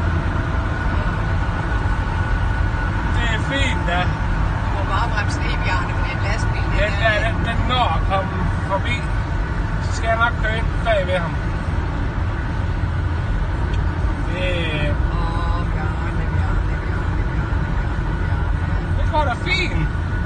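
Steady low road and wind rumble inside a car cabin at highway speed, about 135 km/h, with a man's voice speaking in short snatches over it.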